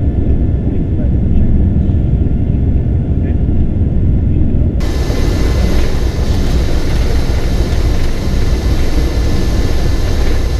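Lockheed L-1049 Super Constellation's four 18-cylinder Wright radial piston engines running, a steady low drone. About five seconds in the sound turns brighter, with more hiss above the rumble.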